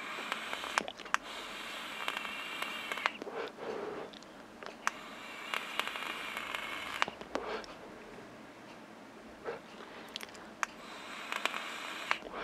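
Joyetech Exceed Edge pod vape being drawn on mouth-to-lung: three draws of about two to three seconds, each a steady hiss of air through its small fixed air hole with the heating coil crackling, and softer breaths between them.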